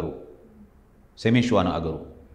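Speech only: a man's voice stops, there is a pause of about a second, then he speaks briefly again near the end.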